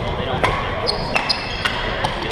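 Badminton rally: sharp racket strikes on the shuttlecock, about half a second in, a second in and again near the end, mixed with brief squeaks of court shoes on the wooden floor. Spectator chatter runs underneath.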